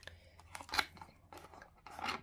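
Faint handling noise from an oscilloscope test lead with crocodile clips and a BNC plug being lifted and turned in the hands: a few soft clicks and rustles.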